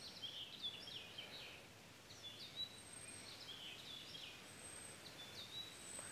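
Faint songbirds chirping: short high phrases in several bursts, with a few thin, high whistled notes between them, over quiet outdoor background noise.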